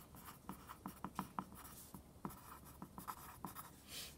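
Pencil writing on lined notebook paper: faint, quick scratching strokes, several a second.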